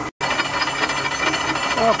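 Indexable-insert face mill cutting steel angle on a milling machine, making a light finish pass: a steady cutting noise with a thin whine running through it. The sound drops out for an instant just after the start.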